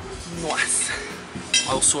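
Voices with brief clinks of dishes and cutlery in a cafeteria.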